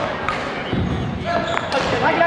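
Several people chatting in a large, echoing gymnasium, with a few short knocks.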